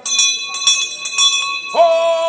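A town crier's brass handbell rung with several quick strokes, its ringing tones hanging on between strokes. Near the end he breaks into a long, loud, drawn-out shout.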